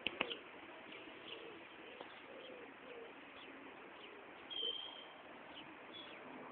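Faint outdoor birdsong: low cooing calls with short high chirps, and one longer, clear whistled note about four and a half seconds in. A couple of sharp clicks come right at the start.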